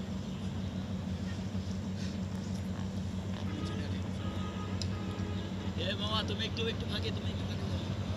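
Faint voices of people talking in the background, over a steady low hum.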